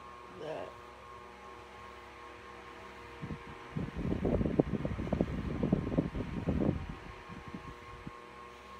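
Steady hum of an electric fan, with a short faint sound about half a second in. From about four seconds in, a loud, low, irregular rumble lasts about three seconds and then stops.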